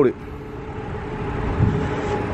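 A 2013 Audi S4 idling, heard as a steady low hum over faint outdoor background noise.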